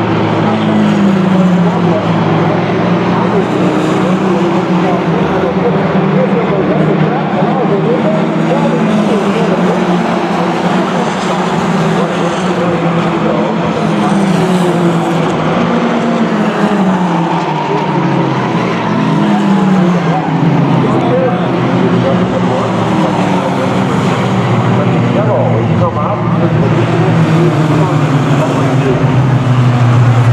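Several four-cylinder mini stock race cars running laps together. Their engine notes rise and fall over and over as the cars accelerate, back off and pass by.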